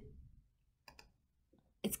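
Two quick, faint computer mouse clicks about a second in.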